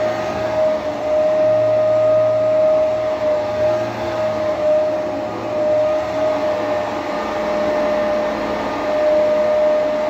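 Bagless upright vacuum cleaner running on carpet: a steady motor whine over rushing air, swelling and easing slightly as it is pushed back and forth.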